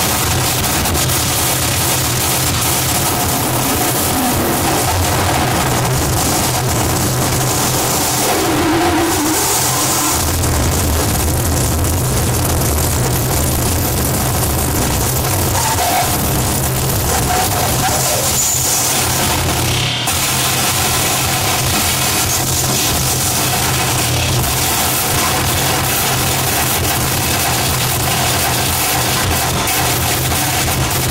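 Harsh noise played live on a tabletop rig of effects pedals and electronics. It is a loud, dense, unbroken wall of distorted noise over a steady low drone, and it drops out for an instant about two-thirds of the way through.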